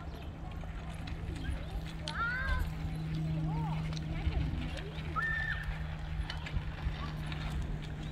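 Children's voices calling out faintly at a distance, a few short rising-and-falling calls, over a steady low hum and rumble.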